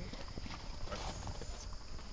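Quiet outdoor background with a low, uneven rumble of wind and handling on the microphone; no distinct sound event.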